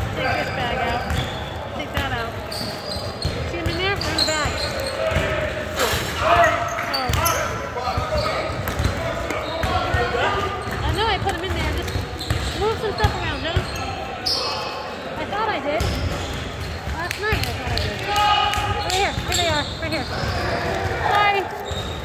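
Game sounds of indoor basketball on a hardwood court: the ball bouncing in scattered knocks, short sneaker squeaks, and players' voices calling out, all echoing in a large gym.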